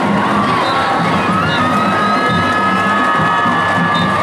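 Stadium crowd cheering, with high whoops and whistles rising above the noise.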